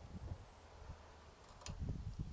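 Pliers working a steel cotter pin on a boat trailer keel roller shaft, with one sharp metallic click about one and a half seconds in and a few soft knocks near the end, over a faint low rumble.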